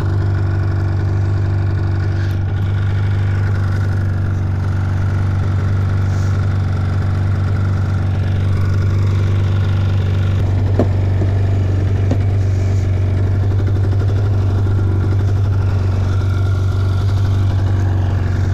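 2004 Polaris RMK 800 snowmobile's two-stroke twin engine idling steadily while the sled stands still.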